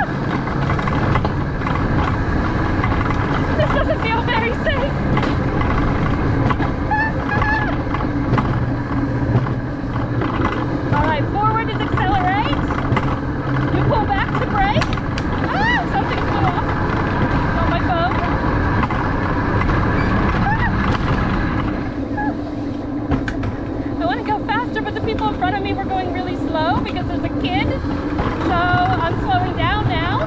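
Alpine coaster sled running along its metal track: a steady rumble and low hum from the wheels on the rail, which eases off a little about two-thirds of the way through.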